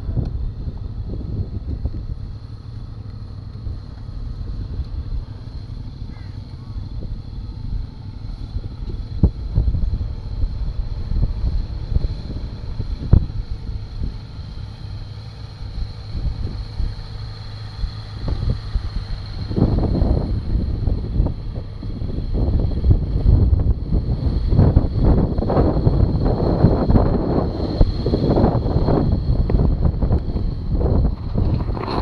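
Wind buffeting an action camera's microphone in gusts, with low rumbling that gets heavier and more continuous about two-thirds of the way through, and a couple of sharp knocks on the mic earlier.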